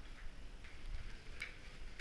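Light clicks and clinks of a wire caving ladder's metal rungs and climbing gear as a caver climbs, with a sharper click about one and a half seconds in.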